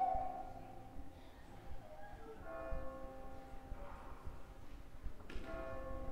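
Church bell ringing: one tone rings on from before, and fresh strikes come about two and a half seconds in and again just after five seconds, each note lingering and fading slowly.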